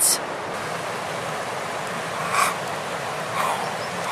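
Steady rushing outdoor background noise, with two faint brief sounds, one about halfway through and another a second later.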